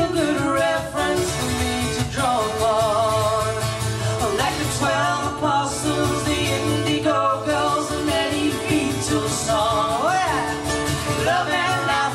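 Two women singing together, accompanied by two acoustic guitars, in a folk song performed live.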